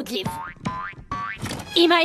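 Cartoon 'boing' sound effects: two springy glides rising in pitch, followed by a voice starting near the end.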